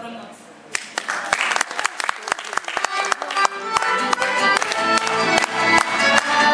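Folk band with violin, accordion, clarinet and plucked string instruments striking up a lively tune about a second in and growing louder, with some applause as it begins.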